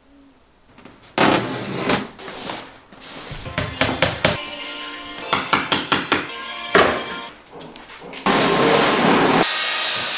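Flooring renovation work in quick cuts: bursts of scraping and rustling as old carpet is pulled up and rolled, a rapid run of about six hammer taps in the middle, and a steady power saw cutting near the end.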